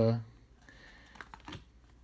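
Faint, soft clicks and rustling of glossy trading cards being slid one by one through a hand-held stack.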